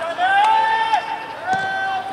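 Two long, drawn-out shouted calls from a person at the pitch, the first rising briefly in pitch then held, the second held steady, with a single knock about one and a half seconds in.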